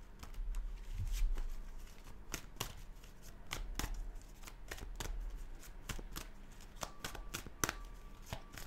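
A deck of tarot cards shuffled by hand, an irregular run of sharp, short card-on-card slaps and flicks.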